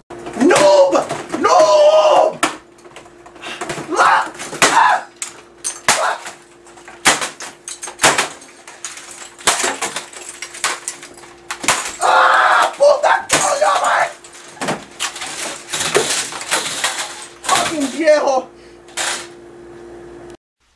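A man shouting in fits, with many sharp knocks and crashes of things being hit in between, in a small room; a faint steady hum runs underneath from a few seconds in.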